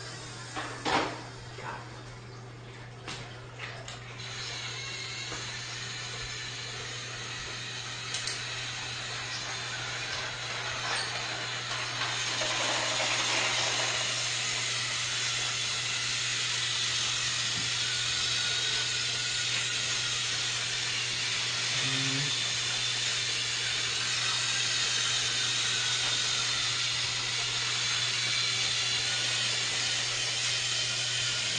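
Steady hissing rush of noise over a low, constant hum. It grows louder about twelve seconds in. A few sharp clicks sound in the first few seconds.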